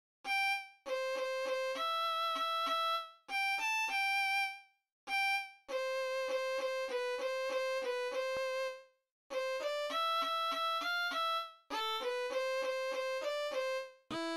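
Solo melody on an electric violin at a moderate tempo: short repeated notes in brief phrases, each phrase breaking off into a short pause before the next.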